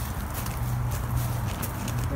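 Footsteps and rustling through leaves and brush, with scattered short crackles and clicks, over a steady low hum.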